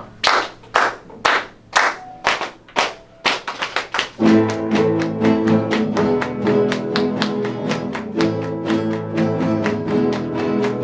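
A count-in of sharp percussive strokes, about two a second and quickening just before the entry. About four seconds in, a group of acoustic guitars starts playing together, bass notes and chords in a steady pattern.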